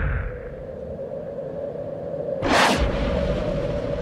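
Edited-in swoosh sound effects over a steady low droning tone: the tail of one whoosh falls away at the start, and a second, sharper whoosh sweeps through about two and a half seconds in.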